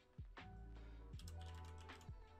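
Computer keyboard typing: a handful of quick keystrokes as a word is typed, over quiet background music.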